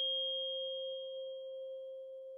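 A single struck chime ringing at one clear pitch with fainter higher overtones, fading slowly: a transition sound leading into an ad break.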